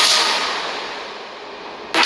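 A single crash-like swish of noise at a scene transition, fading away over nearly two seconds. New music cuts in abruptly near the end.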